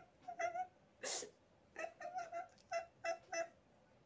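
A person's high-pitched whimpering sobs: short, thin cries, one early and then about seven in quick succession in the second half, with a short noisy breath about a second in.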